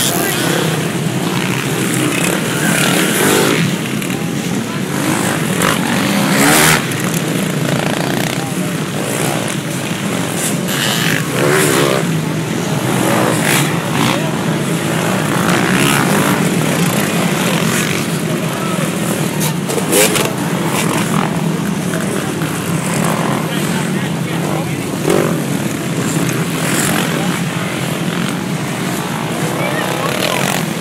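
A pack of off-road dirt bikes riding away from a mass race start, many engines running together in one loud, continuous din, with spectators' voices mixed in.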